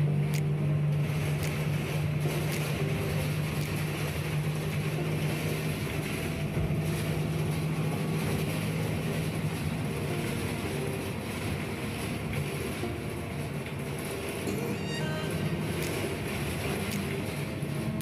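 Inside a moving city bus: a steady low engine hum under constant road and wind noise.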